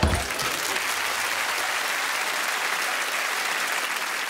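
Studio audience applauding; the clapping starts suddenly and holds steady.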